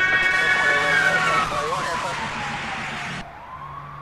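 Police siren wailing: one slow downward sweep in pitch, then rising again after about three seconds as the sound fades.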